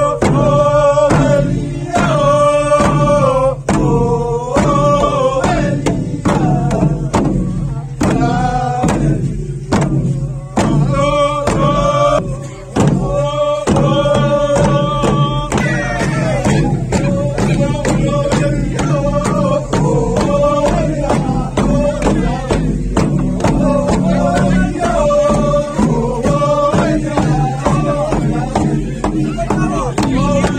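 Group of men chanting a traditional song to a steady beat of tifa, long wooden hand drums with skin heads, struck in an even rhythm.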